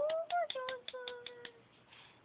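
A baby trying to blow a plastic toy trumpet with its mouthpiece in his mouth: a short rising tone, then a quick run of about seven clicks and a faint steady note that fades out before the end.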